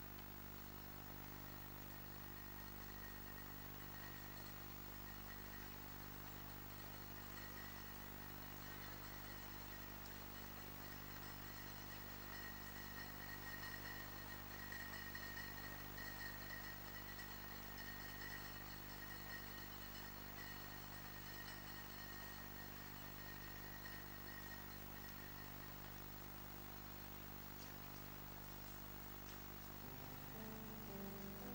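A steady low hum with faint hiss throughout, and a faint high-pitched whine that swells through the middle stretch and fades again.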